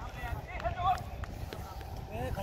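Distant shouts of players calling across a football pitch, with a few sharp clicks and a low rumble of handling noise on the microphone as it moves.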